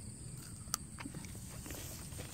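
Quiet garden background with a faint steady high hiss, one sharp click about three-quarters of a second in and a few soft ticks just after.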